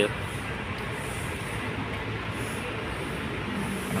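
Steady background rumble of vehicle engines and traffic, even and unbroken.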